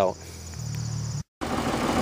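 Oliver 770 tractor engine idling as a steady low hum, with crickets chirping over it. About a second in, the sound drops out for a moment and returns with the engine running louder and rougher.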